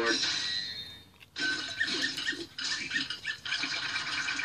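Cartoon soundtrack played through a television's speaker: a hissing magic-spell sound effect fades out about a second in, then a run of short squeaky, chattering sounds follows.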